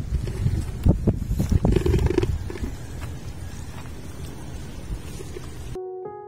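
A few sharp metal knocks and clicks in the first two seconds as the hand tractor's gearbox casing and cover are handled, over a steady low rumble.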